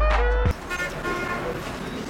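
A pop song with a heavy bass beat cuts off abruptly about half a second in. It gives way to noisy vehicle and road sound with a few brief, steady horn-like tones.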